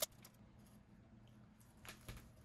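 Near silence: faint room tone, with a short click at the start and another faint click near the end.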